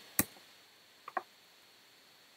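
Computer keyboard keystrokes while text is being edited: one sharp click just after the start, then two fainter clicks about a second in.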